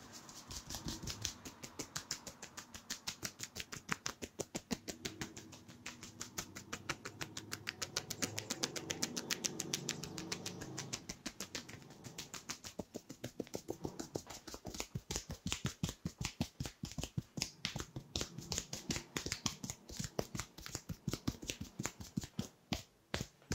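Hands tapping rapidly and evenly on a person's scalp and hair in a percussive head massage, a quick steady train of soft taps, with a softer rustle of hair under the taps in the first half.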